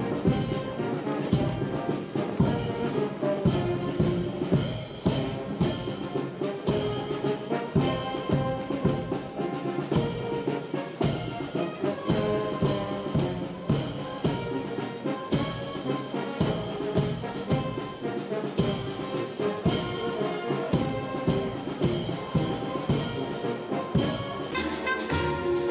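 Military brass band playing a march: trumpets, tubas and a bass drum keeping a steady, regular beat.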